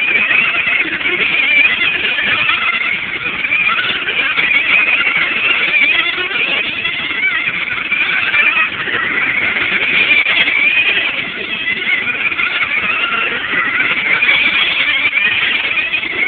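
Several radio-controlled cars racing on a paved oval, their motors giving a loud high-pitched whine that keeps rising and falling in pitch as they lap.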